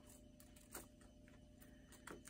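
Near silence: a few faint clicks and rustles of small plastic drill bags being handled, over a low steady hum from a running washing machine.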